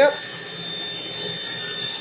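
RIDGID table saw running with a steady high whine while a thin wooden strip is pushed along the fence into the spinning blade.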